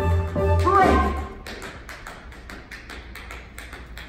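A pit orchestra plays a short held phrase. It breaks off about a second and a half in, and a quick run of dance-shoe taps on a wooden stage floor follows: a solo tap-dance break.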